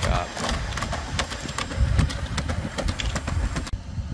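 Unitree Go2 quadruped robot stepping up onto a stone step, its feet tapping irregularly on the stone over a steady low rumble. The taps stop abruptly shortly before the end.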